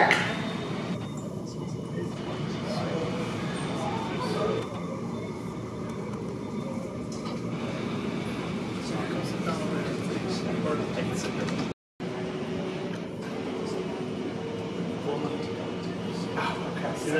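Steady airport-terminal background noise with faint voices in the background; the sound drops out for a split second about two-thirds of the way through.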